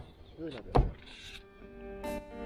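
A sharp knock from a black plastic wheeled trash can being tipped back and handled, a little before the middle. Guitar music comes in near the end.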